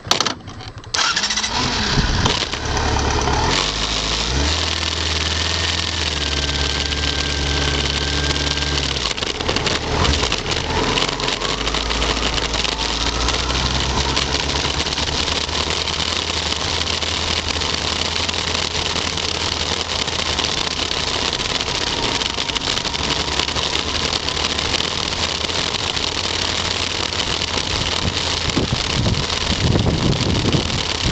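Motorcycle engine starting about a second in, then running at a steady low pitch for several seconds. After that the bike is under way, its engine pulling steadily with wind rushing over the microphone.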